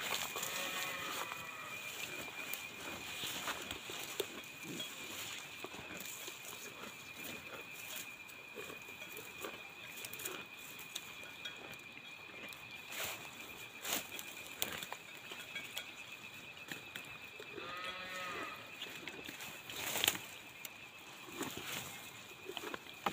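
A water buffalo calling twice, short arching calls at the start and again about eighteen seconds in, with rustling in the grass around it.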